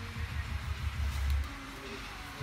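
Background music with a deep, pulsing bass.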